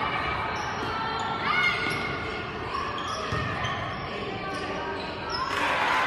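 Basketball being dribbled on a hardwood gym floor, with scattered voices and a few short squeaks echoing around the hall.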